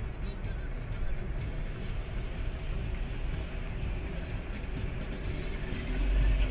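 Steady driving noise of a car, a low rumble of engine and tyres, with music playing over it.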